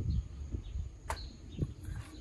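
Outdoor ambience: low rumble of wind or handling on a phone microphone, with small birds chirping faintly in short falling chirps and one sharp click about a second in.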